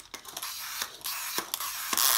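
A small plastic wind-up Santa toy being pulled backward across a board-book page to wind its pull-back spring motor: a gritty whirring with a few sharp clicks, louder near the end.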